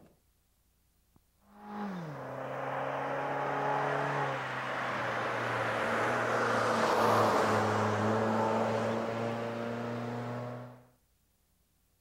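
Chevrolet Cruze's 1.3-litre engine and tyres as the car drives past, starting after a moment of near silence. The engine note falls in pitch about two seconds in, then holds steady while the tyre noise swells to its loudest about seven seconds in and fades away near the end.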